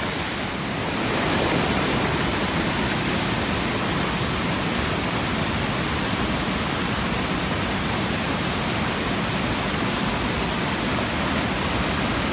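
A creek in flood, swollen with rain runoff, rushing fast with muddy white water: a steady, even rush of water.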